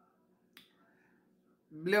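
A pause with a single sharp click about half a second in, then a woman starts speaking near the end.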